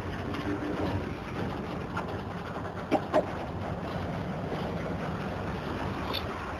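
Freight hopper wagons rolling slowly past on the rails, a steady low rumble with two sharp knocks in quick succession about three seconds in.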